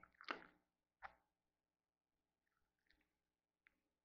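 Near silence, with a faint steady hum, two faint sharp clicks in the first second and a few soft handling noises near the end, from multimeter test probes being handled against a desktop computer's front panel.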